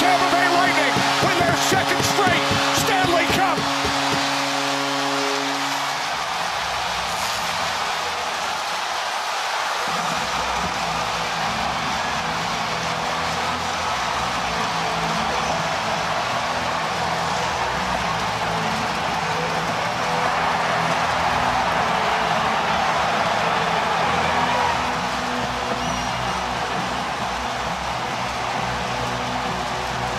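Ice hockey arena crowd cheering at the final horn. A multi-tone arena horn sounds for about the first six seconds, with a quick run of sharp bangs in the first few seconds. From about ten seconds in, arena music with a steady beat plays over the continuing cheers.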